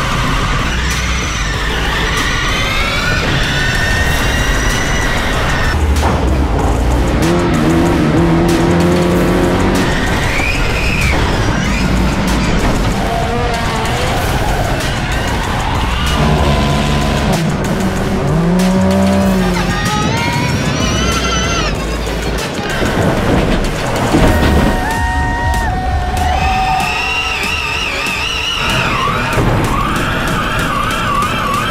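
Rallycross race cars being driven hard on a dirt-and-tarmac circuit, their pitch rising and falling repeatedly as they accelerate and lift, with tyres skidding. A music track plays underneath.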